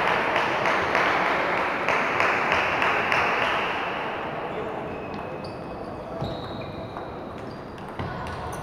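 Table tennis balls clicking irregularly on tables and bats from several matches around a large sports hall, over a steady murmur of voices that fades through the second half.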